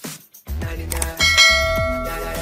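A bright notification-bell chime sound effect rings out a little past halfway and hangs on, over intro music with a steady bass beat that starts after a short silence.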